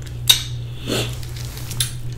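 Eating mouth sounds: a sharp wet smack about a third of a second in as sauce is licked off the fingers, then a couple of softer clicks. A steady low hum runs underneath.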